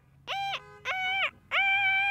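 A boy imitating a truck horn with his voice: four high, steady honks, each under a second long, the third held longest.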